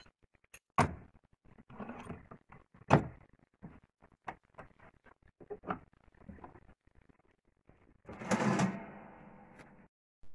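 Wooden boards and a metal screw clamp being set and tightened to press heat-softened PVC flat. There are sharp knocks, the loudest about three seconds in, then small ticks, and near the end a longer pitched creak as the clamp is wound down.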